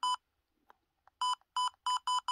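Trail camera keypad beeping at each button press: four short, identical electronic beeps, one at the start, then after a pause of about a second three more at about three a second. Each press steps the video-length setting down one second.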